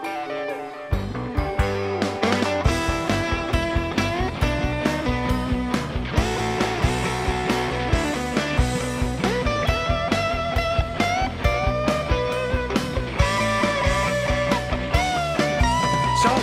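Rock music with guitar: a quieter opening, then the full band with drums comes in about a second in and plays on steadily.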